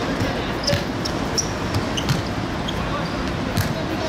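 Football being kicked and bouncing on a hard pitch surface: several sharp thuds spread over a few seconds, above a steady background hiss.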